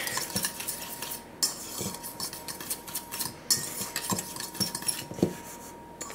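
A small wire whisk stirring dry cake mix (flour, sugar, baking soda, salt) in a stainless steel mixing bowl: a steady scratchy swishing, with a few sharper clinks as the wires hit the metal sides of the bowl.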